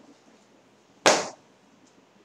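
A single sudden, loud, sharp sound about a second in, dying away within a third of a second.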